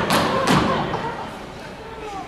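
Two heavy thuds about half a second apart, feet stamping on the stage floor in a comic dance, then fading in the hall's reverberation.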